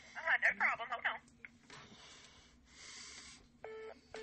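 Telephone line on hold: a voice briefly in the first second, then a short electronic phone beep near the end, a held tone lasting about a third of a second.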